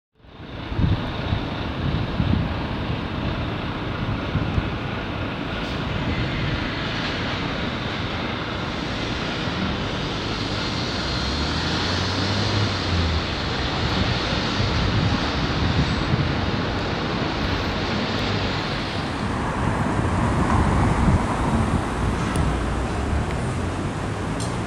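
Steady city traffic noise: a continuous rumble of passing vehicles, cutting in suddenly at the start.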